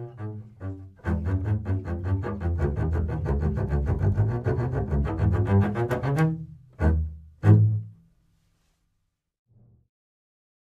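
A double bass played with the bow: a few separate notes, then about a second in a fast run of notes for about five seconds. It ends with two loud short notes that ring out, the second the loudest.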